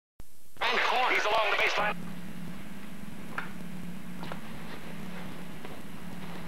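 VHS tape audio at an edit: the sound cuts out for a moment, then comes about a second and a half of a garbled voice, then a steady low hum with a few faint clicks.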